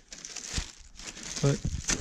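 Plastic packaging crinkling in short rustles as a hand moves plastic-wrapped engine gaskets around inside a cardboard box.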